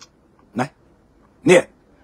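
A man's voice saying two short words, about half a second and a second and a half in, with pauses between.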